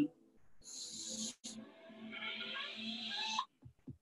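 A person's audible breathing: a short breath, then a longer breathy exhale with a faint voiced sigh that rises in pitch near the end.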